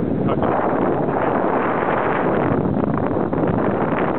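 Wind buffeting the camera's microphone as it moves along the road: a loud, steady rushing noise with no clear tones.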